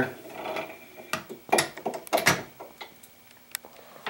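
Light clicks, taps and rustles of handling as a large plastic spool of fishing line is slid onto a metal bolt and bushing on a wooden spooling station: a few separate knocks spread over the seconds.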